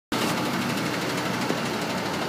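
A vehicle engine running steadily amid street noise, an even, unchanging hum.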